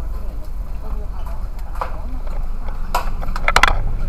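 Steady low rumble of an idling car heard from inside the cabin, with faint voices in the background. A quick cluster of clicks and knocks comes about three seconds in, as the camera is handled.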